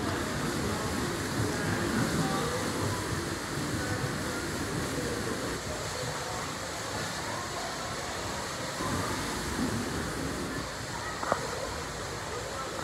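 Indoor swimming pool noise: a steady wash of swimmers splashing and spectators' chatter, with one sharp click near the end.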